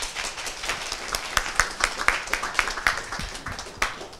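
Audience applauding: a steady patter of many hand claps, with a few louder single claps through it.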